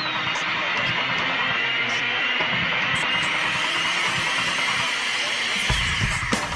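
Rock and electronic song intro building up: a dense, distorted wash of sound under a slowly rising tone. Near the end, drums and bass come in with heavy low beats.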